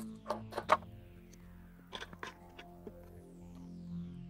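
Soft background music, with a few sharp clicks and taps about half a second in and again around two seconds in as a micro-USB power cable is fitted to an ESP32 board.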